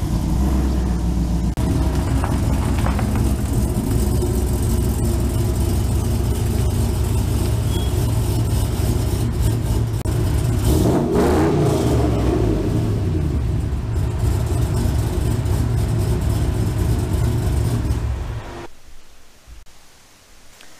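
GMC Sierra pickup's engine running steadily as the truck is driven into the garage, with a rise and fall in engine speed about halfway through; the engine stops near the end.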